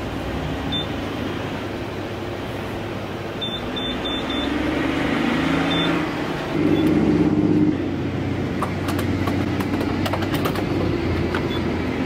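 Gas pump keypad beeping as its buttons are pressed: one short high beep about a second in, a quick run of three or four near four seconds and one more near six. Under it runs a steady rumble of engines and traffic, louder for about a second after six and a half seconds. A few light clicks come in the last few seconds.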